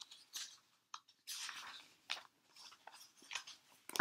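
Faint rustling and soft taps of a paperback book being handled and its pages turned, the longest rustle a little over a second in.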